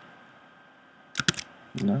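A few quick computer keyboard keystrokes about a second in, after a quiet start.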